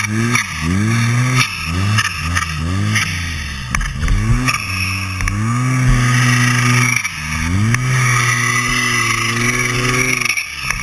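2012 Arctic Cat M1100 Turbo snowmobile's turbocharged four-stroke twin, revved in repeated quick throttle blips, about two a second, for the first four seconds. It is then held at a steady high throttle, with a brief drop about seven seconds in, and backed off right at the end.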